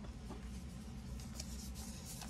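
Faint rubbing and a few light scratches of a trading card being handled between the fingers, over a low steady room hum.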